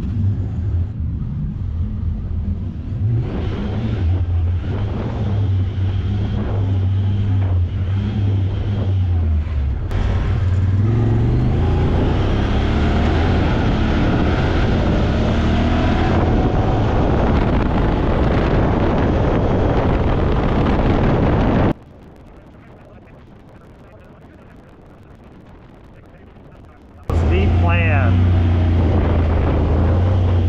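Honda Talon X side-by-side's engine running, low and steady at first. From about ten seconds in it drives on at road speed with rising and falling engine pitch and tire and wind noise. A little past twenty seconds the sound drops abruptly to a faint hiss for about five seconds, then the engine note comes back.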